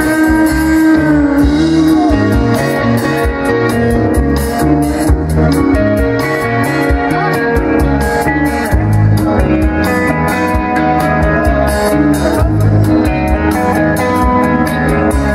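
Live rock band playing an instrumental passage: electric guitars carrying the melody over bass and a steady drum beat, with no singing.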